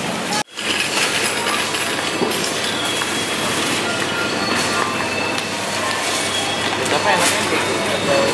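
Busy supermarket ambience: a steady wash of background voices with a shopping trolley rolling along the floor. It breaks off in a brief silent gap about half a second in.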